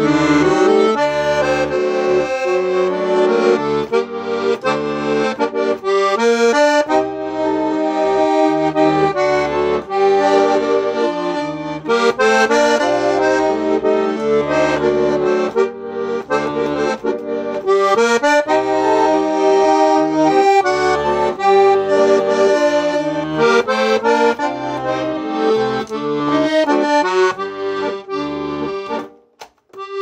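Royal Standard three-voice German button accordion (bayan), freshly overhauled and tuned, playing a tune: a melody with changing notes over a rhythmic bass accompaniment. The playing stops briefly about a second before the end, then resumes.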